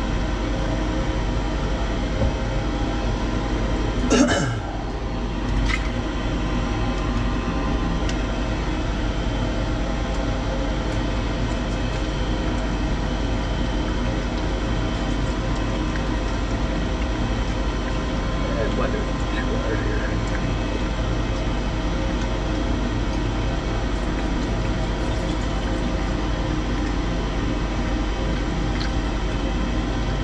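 Steady machine hum, a dense unchanging drone made of many fixed tones, with a sharp knock about four seconds in.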